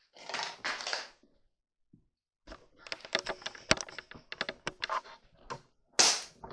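Camera handling noise: a soft rustle in the first second, then, after a short pause, a run of irregular light clicks and taps for about three seconds.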